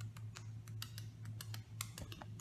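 Quick irregular light clicks and taps of a phone being handled close to its microphone, several a second, over a steady low hum.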